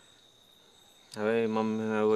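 Crickets chirping steadily at a faint level, a thin, high trill. About a second in, a man's voice starts and becomes the loudest sound.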